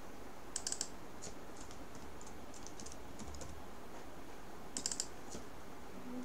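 Computer keyboard keys being typed in short bursts: a quick cluster of keystrokes about half a second in, another near the end, and scattered single key clicks between, over a faint steady hiss.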